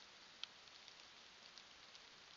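Near silence: a faint, even hiss of forest ambience through a trail camera's microphone, with a few light ticks, the clearest about half a second in.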